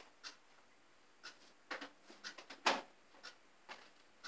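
A series of short, irregular crinkles and rustles from dyed papers and the aluminium foil lining a baking tray being handled with gloved hands, the loudest about two-thirds of the way through.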